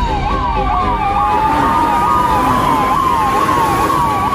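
Emergency-vehicle siren, a fast yelp sweeping up and down about three times a second over a slower wailing tone, with a low rumble underneath.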